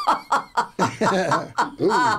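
People chuckling and laughing in a quick run of short bursts, mixed with bits of speech.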